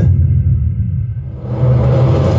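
Film trailer soundtrack: a deep, steady low rumble under sustained droning tones, swelling into a louder rushing rise about one and a half seconds in.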